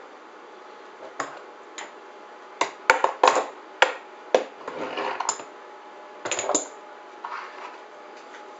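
Knocks and clatter of hard parts being handled while reaching under a workbench test rig to retrieve the pieces of a broken seacock through-hull fitting. About ten sharp, irregular knocks and clicks, with some rustling around the middle.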